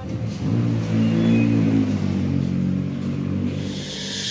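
A motor vehicle's engine running, its pitch rising and falling slightly as it revs.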